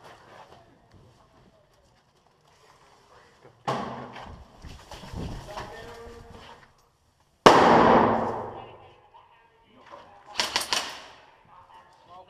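Two sudden bangs, each dying away over a second or two. The second, about seven and a half seconds in, is the loudest. Near the end comes a quick string of sharp cracks, typical of airsoft gunfire.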